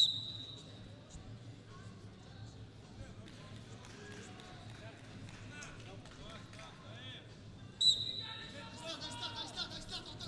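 Referee's whistle blown in two short blasts: once as the ground wrestling is halted, and again about eight seconds in as the wrestlers restart on their feet. Arena crowd voices and shouts carry on underneath and swell after the second whistle.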